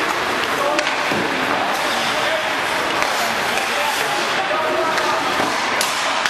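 Ice hockey practice din: a steady hiss of skates on the ice, scattered sharp clacks of sticks and pucks, and voices of players and coaches, reverberant in an indoor rink.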